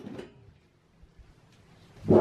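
A brief, faint metallic slide of a desktop PC's sheet-steel side cover panel coming off the case right at the start, then near silence.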